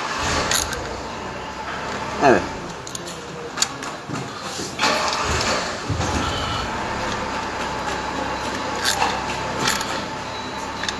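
Metal hand tools clicking and clinking on the bolts of a 50 cc scooter's belt-drive cover as they are re-checked for tightness: a few sharp clicks over steady background noise.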